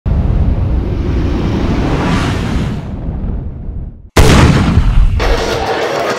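Edited intro sound effect over a black screen: a low rumble with a rising swell that fades away, a moment of silence, then a sudden deep boom about four seconds in. Just after five seconds, music and crowd noise from the meet come in.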